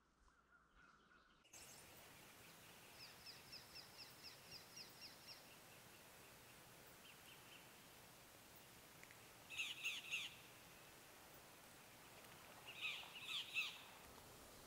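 Faint bird calls over a low hiss: a quick run of about ten high chirps, a short trill, then two louder bursts of harsh calls, one near the middle and one near the end.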